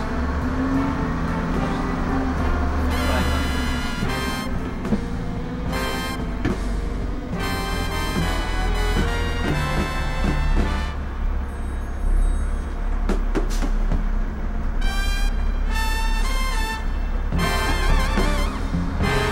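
Music with short brass stabs over the steady low drone of a Seddon Atkinson Leader refuse lorry's diesel engine as it drives off on its automatic gearbox.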